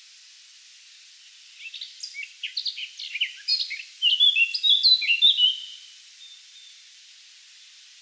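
A small songbird sings a rapid, varied phrase of high chirps and short whistles, starting about one and a half seconds in, growing louder about four seconds in and stopping about six seconds in, over a steady hiss.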